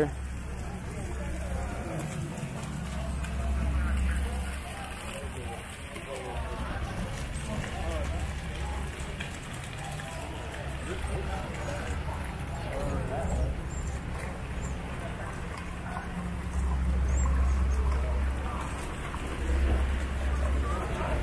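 Water splashing and trickling down a rock fountain into its pool, under the distant voices of people nearby. A low rumble, like wind on the microphone, swells a few seconds in and again near the end.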